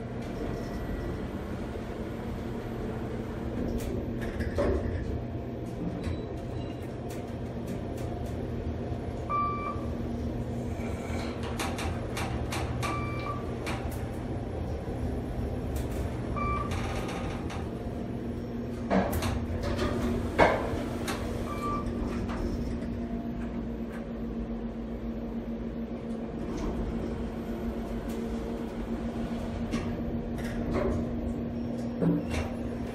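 Kone traction elevator car travelling with a steady hum, giving a short electronic beep every few seconds as it passes floors. A couple of sharp clunks come about two-thirds of the way through.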